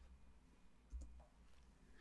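Near silence with a single faint computer mouse click about a second in, starting playback of a paused video.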